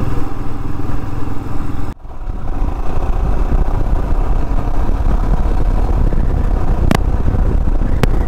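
Motorcycle being ridden along a road: the engine runs steadily under heavy low wind rumble on the microphone, with a brief drop-out about two seconds in and a sharp click near the end.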